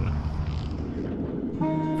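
Low steady background rumble, with a held chord of background music coming in near the end.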